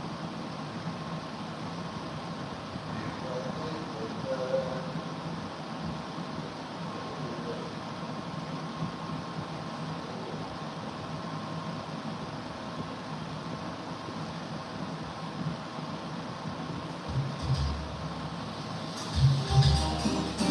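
Steady room noise with faint, indistinct sounds in it. Music starts in the last few seconds, with low repeated beats.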